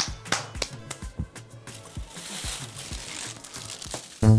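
Background music with a steady beat, over which a thin plastic bag crinkles and rustles for a second or so about halfway through as it is handled.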